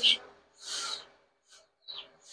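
A short, soft breath close to the microphone, with a faint click near the end.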